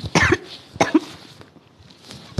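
A person coughing twice, the coughs about two-thirds of a second apart, near the start.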